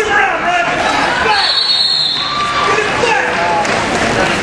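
Spectators and coaches shouting over one another during a wrestling bout, several voices overlapping with no clear words.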